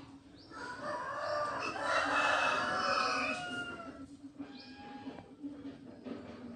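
A rooster crowing: one long call of about three seconds, followed by a shorter, fainter call near the end.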